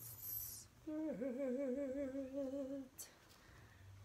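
A woman's voice holding one long hummed note for about two seconds, starting about a second in, its pitch wavering slightly. It is a drawn-out filler sound while she pauses mid-sentence. There is a brief rustle just before it.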